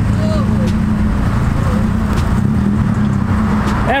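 A car's engine running steadily at low revs as the coupe rolls slowly past, a deep even rumble with no revving, the car driven gently out rather than swung.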